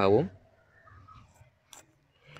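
A man's voice trailing off, then a faint marker on a whiteboard drawing a curve, and a single sharp click shortly before the end.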